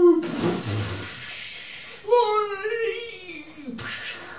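A performer's voice wailing for a falling puppet: a long falling cry that breaks into a rushing noise, then a second falling wail about two seconds in, and a sharp knock just before the end.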